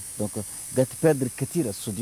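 A man speaking in French with pauses between phrases, over a steady high-pitched hiss from the recording.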